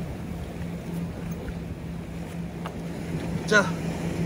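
A boat engine drones steadily and low in the distance over wind and the wash of the sea. A single short spoken word comes near the end.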